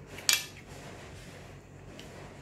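Metal spoon and fork clinking against a plate as food is scooped up: one sharp ringing clink, doubled, about a third of a second in.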